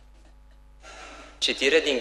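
Quiet at first; a little under a second in, a breath drawn in close to a microphone, and about half a second later a man begins reading aloud in Romanian.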